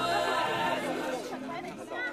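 Several people talking at once in overlapping chatter, with no single voice clear enough to make out words.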